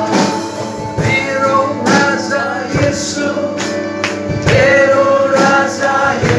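A congregation singing a Christian worship song together, accompanied by guitar, with a steady beat about once a second.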